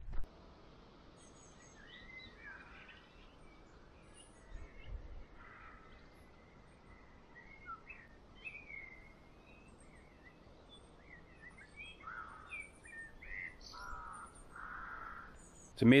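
Faint outdoor birdsong: scattered short chirps and calls throughout, with a few lower, longer calls in the last few seconds.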